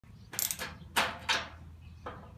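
Ratcheting screwdriver clicking in four short strokes within about a second, the loudest about a second in.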